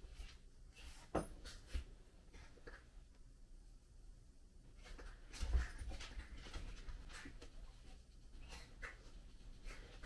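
Abrasive polishing cloth rubbed in small circles on a steel knife blade to scrub off rust spots. It makes faint, uneven scrubbing strokes, a few of them louder than the rest.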